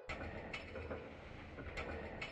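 Faint irregular mechanical clicks and rattles over a steady low hum.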